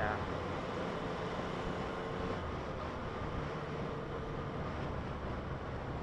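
Yamaha FZ-09's three-cylinder engine running steadily at cruising speed, mixed with wind and road noise.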